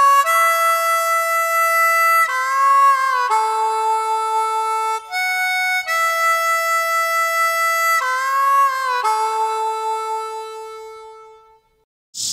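Solo harmonica playing a slow melody of long held notes, several of them bent in pitch, with the last note fading out near the end.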